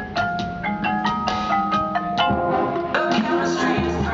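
Marching band music: a quick run of struck mallet-percussion notes from the front ensemble, with held notes and a low tone joining from about halfway through.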